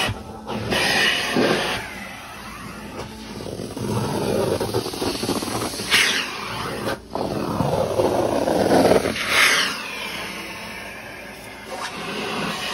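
Hot water extraction machine's vacuum running through a stair tool drawn over carpeted stair treads, a rushing, hissing suction that swells with each stroke of the tool, several times over. The sound cuts out for a moment about seven seconds in.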